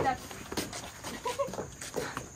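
Footsteps in sandals on a wooden deck: a loud thump as a foot lands at the start, then lighter steps. A brief faint high-pitched call comes about a second in.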